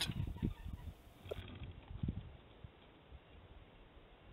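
Faint, irregular soft thumps over the first two seconds or so: a bear cub dropping off the deer-stand ladder and running away across grass.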